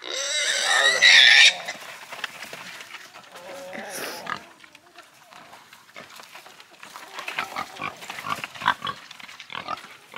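A piglet squealing loudly and shrilly for about a second and a half while being held, with a shorter squeal about four seconds in.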